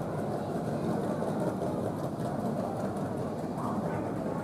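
Steady low rumble of jet airliners taxiing, muffled through the terminal windows.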